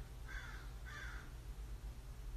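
A bird calling faintly three times in quick succession, over a low steady hum.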